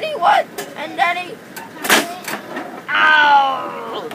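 A boy's vocal sound effects while playing with wrestling action figures: short grunting noises, a sharp knock about two seconds in as a figure is slammed against the plastic toy ring, and a long cry falling in pitch near the end.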